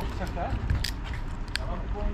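Plastic screw cap of a small drink bottle being twisted open by hand, with two sharp clicks as it turns.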